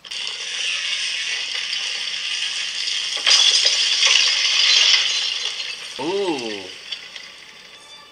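Rattling, hissing sound effect from the episode's soundtrack that starts suddenly, swells for a couple of seconds and then fades. A short cry rises and falls about six seconds in.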